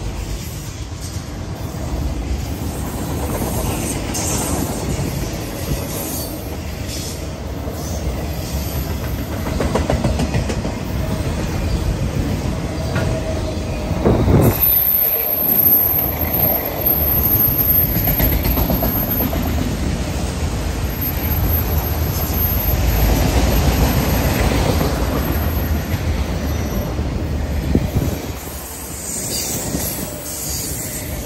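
Freight train of autorack cars rolling past close by: a steady rumble of steel wheels on rail with clickety-clack over the joints. A thin, high wheel squeal sets in about halfway through and runs until near the end.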